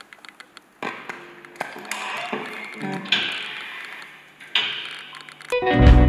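An electric guitar, a Telecaster, plays an unaccompanied intro of picked notes and chords. About half a second before the end, the full band comes in much louder.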